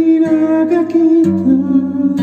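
A man singing a long held note to his own acoustic guitar; a little over a second in the note steps down and a low guitar note is struck beneath it.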